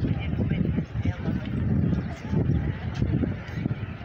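Wind buffeting a phone's microphone: an irregular low rumble that starts suddenly and dies away near the end, over faint voices.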